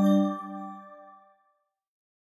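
The last chime-like note of an outro jingle, struck just before the start and ringing out, fading away over about a second and a half.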